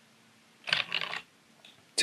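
Computer keyboard keys struck in a quick run of several strokes, a little over half a second in, with a faint single click near the end.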